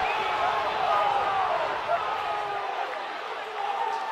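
Ballpark crowd noise: many voices mixed together that slowly die down after a run scores.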